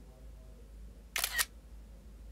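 A tablet camera app's shutter sound as a photo is taken: one short double click about a second in.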